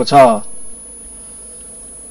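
A man's voice stops about half a second in, leaving a steady low hum, a faint buzz, until the voice starts again at the end.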